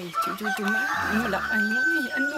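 A rooster crowing: one long, drawn-out call that starts just after the opening and carries on to the end.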